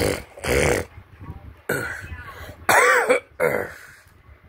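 A person coughing and clearing their throat in about five short, harsh bursts, one of them voiced with a rising and falling pitch.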